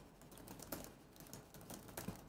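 Faint, irregular scratching of a stencil brush being swirled over a plastic stencil, working paint onto the board beneath.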